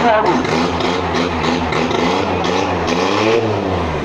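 A motor vehicle's engine running and revving in the well-of-death drum, its pitch rising and falling in a swell near the end, with voices over it.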